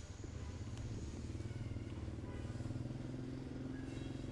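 Motorcycle engine running steadily, a low even hum.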